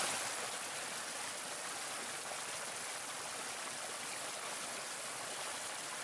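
Small stream cascading over rocks: a steady rush of splashing water.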